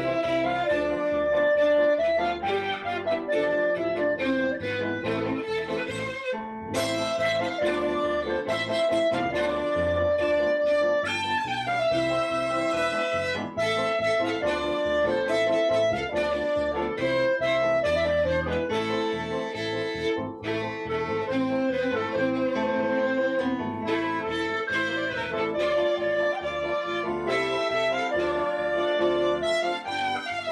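Klezmer band playing a tune, with one clear melody line moving over a rhythmic accompaniment.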